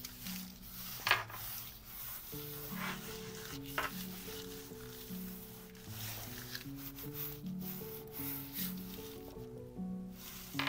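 Hands rubbing and pressing thin wet strength tissue paper down onto a gel printing plate, a soft paper rustle with a couple of sharper sounds, over quiet background music.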